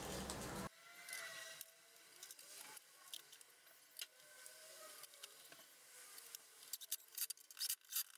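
Faint, scattered clicks and light metal taps of small hardware being handled while M5 cap-head screws with serrated lock washers are fitted to a CNC gantry plate, with a quick run of sharper clicks near the end.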